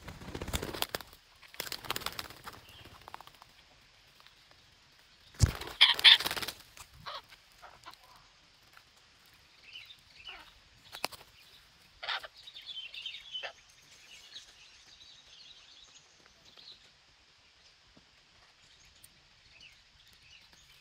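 Parakeets flapping their wings in short bursts, loudest about six seconds in, followed by scattered short, high calls.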